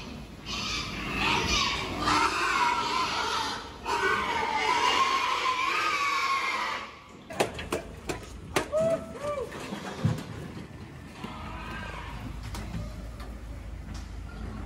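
Pigs squealing loudly for about seven seconds. After a sudden drop, a few sharp knocks and short squeals are heard as pigs are moved along a concrete loading chute.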